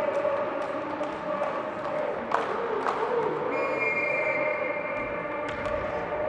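Indoor arena crowd noise with many voices chanting, a few sharp knocks of a volleyball bounced on the court before a serve, and a steady high whistle lasting about a second and a half past the middle.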